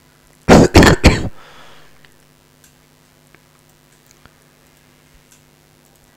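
A man clears his throat with three quick, loud coughs about half a second in, then faint scattered clicks.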